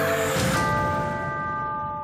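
A TV programme's title sting: a sustained musical chord, then a bell-like chime about half a second in that rings on and slowly fades.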